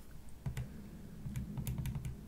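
Keys of a TI-84 Plus Silver Edition graphing calculator pressed a few times, short separate clicks of the arrow pad as the table is scrolled, with a low handling rumble of the calculator on the desk.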